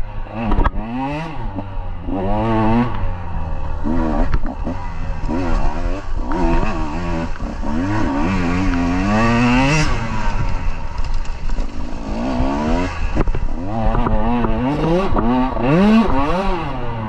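KTM 150 two-stroke dirt bike engine being ridden hard, revving up and down over and over: the pitch climbs with each burst of throttle and drops back between them, easing off briefly about twelve seconds in.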